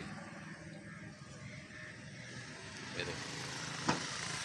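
Steady low background rumble, with a short voice sound about three seconds in and a sharp click just before the end.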